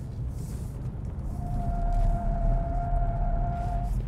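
Low road and engine rumble inside the cabin of a 2023 Kia Sportage X-Pro cornering on a track. About a second in, a steady, high tyre squeal begins and holds for over two seconds before stopping just before the end.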